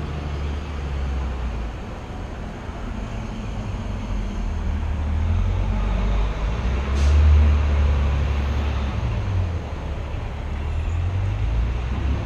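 City street traffic: a steady low rumble of passing vehicles that swells louder about seven seconds in, then eases off.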